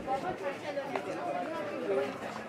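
Background chatter: several people talking at once, with no single clear voice.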